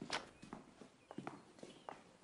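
Faint, irregular footsteps with scattered light knocks; the sharpest knock comes just after the start.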